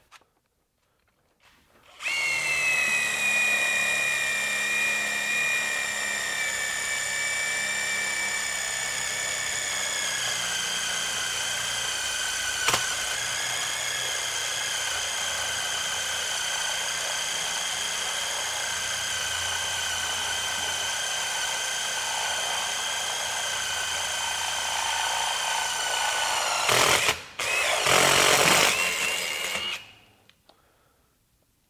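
Cordless DeWalt XR impact driver at its top speed, driving a 3/8-inch Spyder Mach Blue Stinger bit through plate steel more than a quarter inch thick: a steady high whine that sags a little in pitch under load for about 24 seconds. Near the end it stops briefly, runs again for a second or two, and stops.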